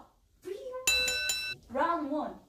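A bell sound effect struck three times in quick succession, ringing with several steady high tones for under a second, about a second in; a voice follows near the end.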